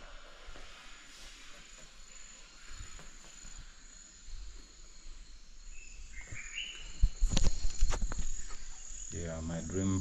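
Insects chirring steadily at a high pitch in the background, with a cluster of loud knocks and bumps about seven to eight seconds in.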